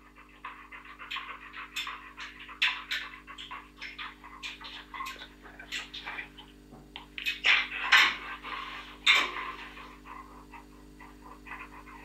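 Yellow Labrador panting: quick breaths in uneven bursts, a few louder ones about seven to nine seconds in, over a faint steady hum.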